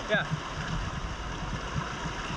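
Steady rushing of a fast-flowing river, with the water sloshing around someone wading through it waist-deep.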